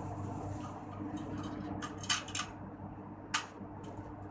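Metal clinks from the steel frame of a folding wheelchair being handled and fitted together by hand: two clinks close together about two seconds in and a single sharp one near the end, over a steady hum.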